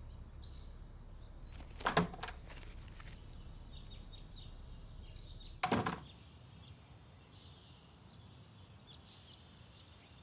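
Two short thuds, about two seconds in and again just before six seconds, the second a house door swinging shut. Faint bird chirps sit behind them.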